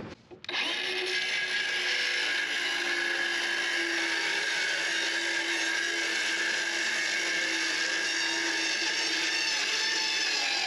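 Milwaukee M12 Fuel brushless cordless circular saw ripping a quarter-inch plywood sheet, its blade set to barely cut through. It starts about half a second in and runs at a steady pitch through the cut.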